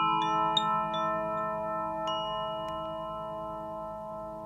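Metal chimes struck one note at a time, several in quick succession at the start and a couple more about two seconds in, each note ringing on and overlapping the others, over a low steady hum.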